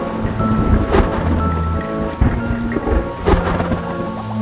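Thunderstorm sound effects, thunder and rain, laid over music with held notes. There are loud cracks about one, two and three seconds in.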